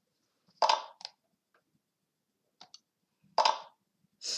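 Short, sharp click sounds as moves are played in an online chess game on a computer. A loud click comes about half a second in with a smaller one just after it, then a faint quick double click, then another loud click shortly before the end.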